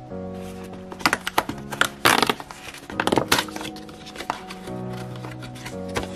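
Background music with steady sustained chords, over a run of sharp crinkling and crackling handling noises, densest and loudest from about one to three and a half seconds in, from a plastic sheet-mask pouch and a cardboard advent-calendar door being peeled open.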